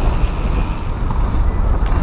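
Wind buffeting the microphone of a camera moving along with the cyclists: a loud, steady low rumble mixed with rolling road noise.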